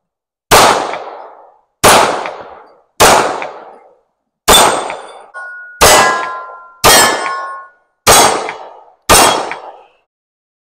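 Ruger Security-9 Compact 9 mm pistol fired eight times in slow succession, about one shot every 1.2 seconds. Steel targets ring with a lingering metallic tone after some of the hits near the middle.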